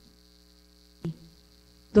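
Steady electrical mains hum on the audio line during a pause in speech, with one brief click about a second in.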